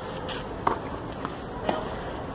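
Two sharp tennis ball knocks about a second apart as a first serve is played, a serve that lands long. A steady wind haze lies underneath.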